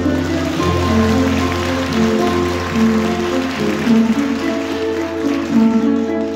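Audience applause, a dense steady clapping that thins out near the end, over instrumental music with guitar that keeps playing.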